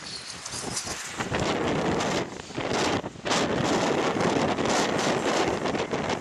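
Wind buffeting the microphone: a loud, rough rushing noise that builds about a second in, with two brief lulls a little past the middle.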